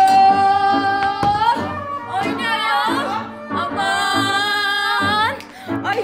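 Several women's voices singing long held notes that slide upward at their ends, over a steady low beat.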